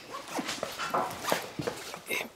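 Several short whimpering cries from an animal, each falling in pitch.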